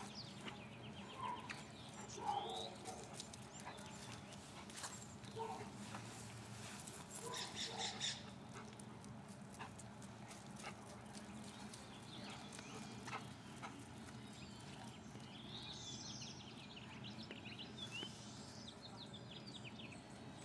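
Faint, scattered short animal calls, dog and bird sounds, over a low steady outdoor hum, with a rapid run of clicks about seven seconds in.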